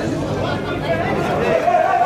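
Overlapping voices of people talking in a busy market. Near the end, one voice is drawn out on a steady pitch for about a second.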